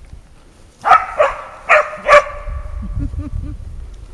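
English springer spaniel barking four times in quick succession, starting about a second in, with sharp clear barks roughly half a second apart.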